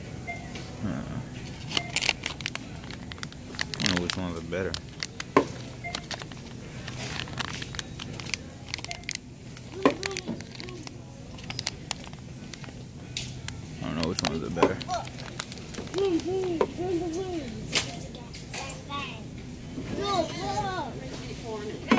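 Grocery store aisle sound: a steady low hum under scattered clicks and crackles, with murmured voices that grow clearer about three quarters of the way through.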